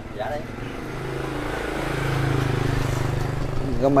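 Engine of a motorbike going by on the road, a steady low hum that grows louder over the first couple of seconds and eases slightly near the end.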